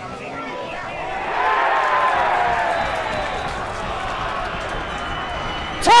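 Football crowd at a match: a mass of voices that swells about a second in and stays up, with scattered shouts in it. A loud man's shout comes right at the end.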